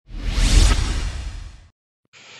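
Whoosh sound effect with a deep low boom underneath, swelling for about half a second and then fading away over the next second. It is the sting that accompanies an animated logo intro.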